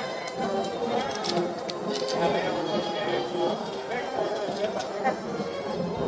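Background music mixed with the murmur of crowd chatter, with no close voice.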